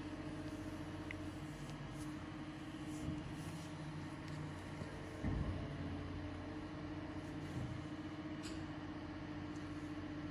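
A steady low machine hum, with a single dull thump a little past five seconds in.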